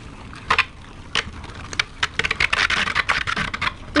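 Metal Beyblade top spinning in a plastic stadium with a few separate clicks, then a run of rapid clicking from about halfway through to near the end.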